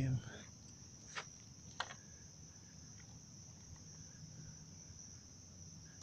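Crickets trilling steadily and faintly in a high band, with two small clicks about one and two seconds in.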